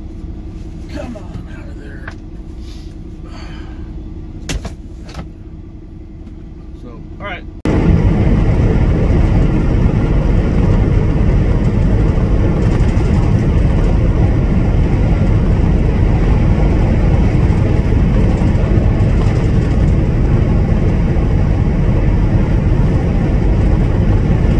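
Truck engine idling steadily, heard inside the cab, with a few clicks. About eight seconds in it gives way abruptly to a much louder, steady rumbling noise that carries on to the end.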